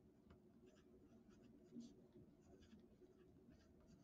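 Faint scratching of a pen writing on lined paper, in short strokes.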